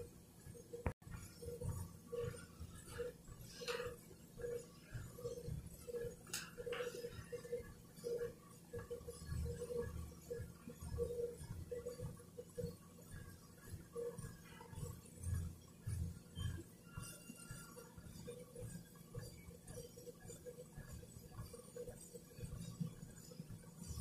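Treadmill belt running at a slow walking pace, with faint walking footfalls on the deck in a steady rhythm of about three steps every two seconds, and occasional low bumps.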